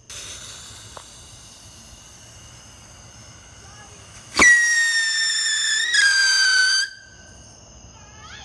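Whistling Pete firework fountain: a quieter hiss of the lit fuse, then about four and a half seconds in a very loud shrill whistle that starts suddenly, sinks slowly in pitch with one small step about halfway, and cuts off after about two and a half seconds.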